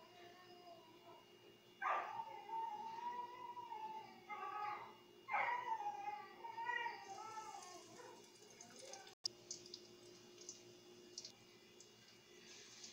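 A cat meowing three times in long, wavering calls, the loudest sounds here. Near the end, hot oil crackles as eggplant balls fry in a pan.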